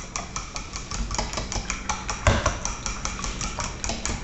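A fork beating eggs by hand in a bowl: a rapid, even run of clicks as it strikes the bowl.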